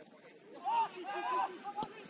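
Footballers shouting to each other on the pitch, short raised calls such as "go!", starting about half a second in. A single sharp knock sounds near the end.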